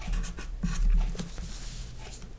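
Felt-tip marker writing on paper in a few short strokes.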